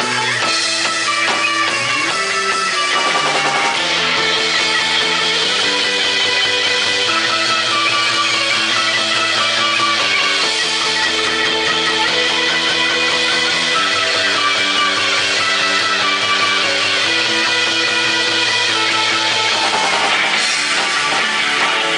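Live shoegaze rock band playing: electric guitar and electric bass over a drum kit, in a dense, steady wall of sound. The bass moves in long held notes that change every second or few seconds.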